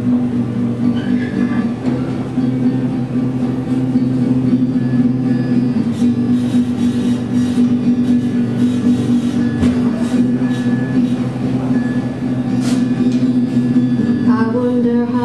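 Acoustic guitar playing a song's instrumental introduction, strummed chords changing every couple of seconds.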